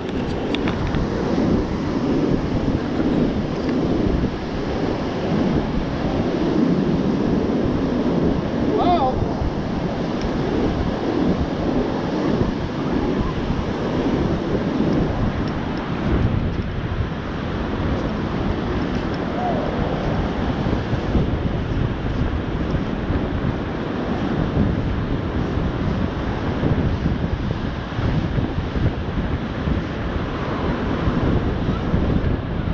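Surf breaking and washing up the beach in a steady rushing wash, with wind buffeting the microphone.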